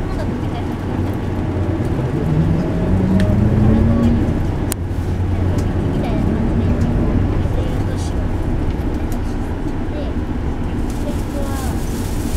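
Kanachu city bus heard from inside the passenger cabin while moving: a steady low engine and drivetrain hum, rising in pitch about two to four seconds in and again around six seconds as the bus pulls. A single sharp click comes near the middle.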